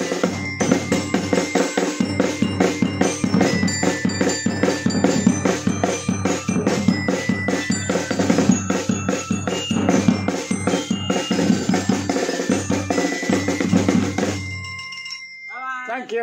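A small street band of snare drum, bass drum and a handheld xylophone playing a fast, driving rhythm with ringing bar notes over the drumming. The playing stops about a second and a half before the end, leaving a note ringing away.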